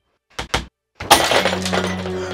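A rubber ball bouncing twice, then a ceramic mug hit and shattering with a loud crash about a second in, followed by a sustained music sting.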